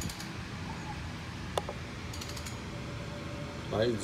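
A few faint mechanical clicks and short runs of quick ticks, with one sharper click, as the engine's crankshaft is turned by hand to bring the intake valves round to closed before the carbon on the back of the valves is cleaned.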